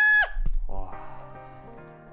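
A man's high-pitched shriek of excitement that cuts off about a quarter second in, followed by a brief low bump and then gentle background music with slow, held notes.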